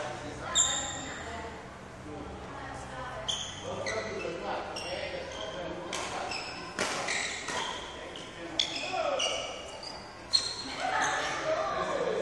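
Indoor sports-hall ambience: voices in the background, many short high squeaks and a few sharp thuds, echoing in the large hall.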